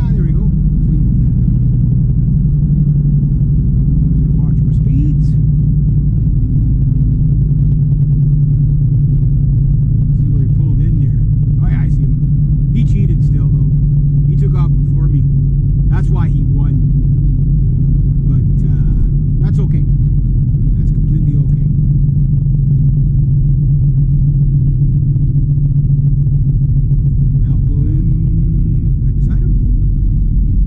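Steady engine drone and tyre rumble heard from inside a small car cruising at highway speed.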